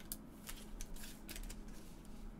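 Trading cards and their clear plastic sleeves handled by gloved hands: a few brief, faint rustles and slides as the cards are shuffled and sorted.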